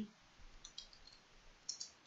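A few faint computer keyboard keystrokes: quick clicks in two small clusters as a word is typed.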